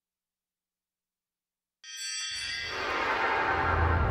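Digital silence for about two seconds, then a newscast's opening theme music comes in: a held chord of high tones over a low rumble, building in loudness.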